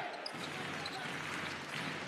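Basketball arena ambience: steady crowd noise, with the ball dribbled on the hardwood court during live play.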